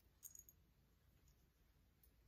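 Near silence broken by a few faint metallic clinks about a quarter second in, as fine gold necklace chains and a metal pendant are handled.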